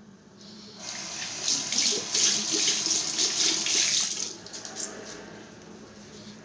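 Water running from a bathroom sink tap for about three and a half seconds, starting about a second in and shutting off about four seconds in.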